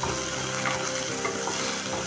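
Chopped onion and crushed garlic sizzling in hot oil in a kadhai, stirred with a wooden spatula, with a few light ticks from the spatula against the pan.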